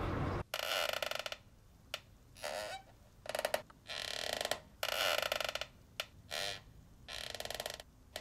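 Typing on a computer keyboard: irregular bursts of rapid keystrokes, about seven in all, with short pauses between them.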